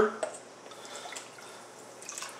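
Hot water poured from a plastic measuring jug onto sugar in a stainless steel bowl: a faint, even pour with a few small drips.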